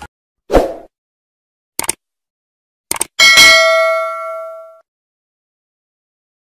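Subscribe-button animation sound effects: a short pop, two quick double clicks, then a bell ding that rings out for about a second and a half.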